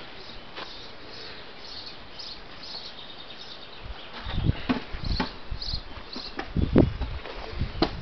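Low thumps and rumbles from a handheld camera being moved and knocked about, starting about halfway through, with a sharp click near the end, over faint high chirping in the background.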